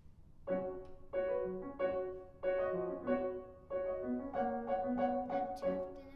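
Grand piano playing the introduction to a musical-theatre song: chords struck in a steady rhythm, about one every two-thirds of a second, starting about half a second in and each left to ring.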